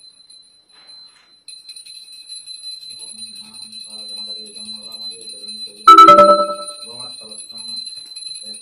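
Hand bell rung continuously in a steady high ring, as for a puja aarti. About six seconds in comes one loud metallic clang that rings with lower tones for under a second. A low voice murmurs faintly beneath.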